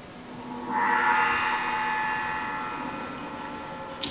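A single gong-like metallic tone struck about a second in, ringing with many overtones and slowly fading.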